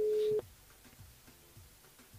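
Telephone ringback tone on an outgoing call: one steady beep that cuts off about half a second in as the call is picked up, leaving a quiet open line.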